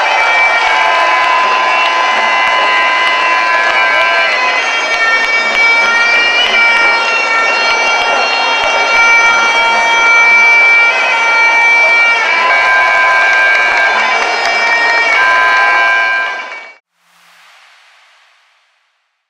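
Traditional Lethwei ring music led by a shrill reed wind instrument, the hne, playing long held notes that shift pitch a few times, over crowd noise. It cuts off suddenly near the end.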